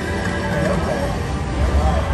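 Electronic music and sound effects from a Casino Royale-themed video slot machine during a spin, with short gliding tones, over a steady casino-floor din.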